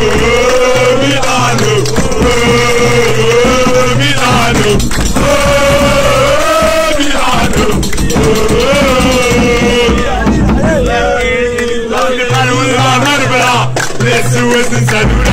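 Music: male voices singing a football supporters' chant in long, held, wavering notes over a steady low bass.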